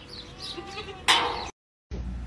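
Sheep bleating, with faint calls and then one loud bleat about a second in.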